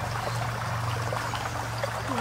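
Shallow forest stream trickling and flowing steadily over stones, with a steady low hum underneath.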